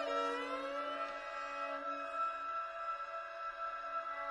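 Contemporary classical music on bowed strings: several long notes held steadily at once, with slow sliding glissandi in the first second.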